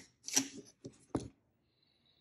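Clearing mechanism of a 1910 Herzstark Austria Model V mechanical calculator being worked by its clearing lever: three sharp metallic clicks in about a second, the first and last loudest.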